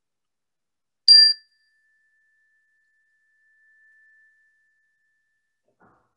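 A small bell struck once, its clear tone ringing on and fading over about four seconds; it signals the start of a moment of silent prayer.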